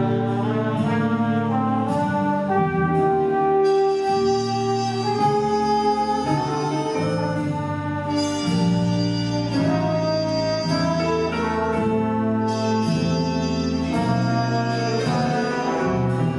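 Jazz big band playing a slow ballad: saxophones and brass hold full sustained chords that change every second or two.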